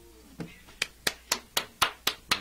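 The last chord of an acoustic guitar dies away, then hand clapping starts in a steady beat of about four claps a second: applause at the end of the song.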